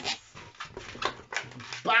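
Latex modelling balloon being handled and twisted into a small bubble: quiet rubbing of rubber against hands with a few soft clicks.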